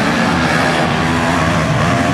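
Motocross bikes' engines revving up and down on the race track, several engine notes overlapping and shifting in pitch.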